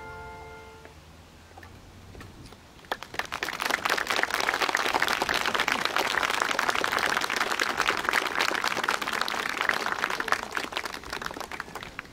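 The symphony orchestra's final held chord dies away about a second in. About two seconds later an outdoor audience breaks into applause, which carries on steadily and thins out near the end.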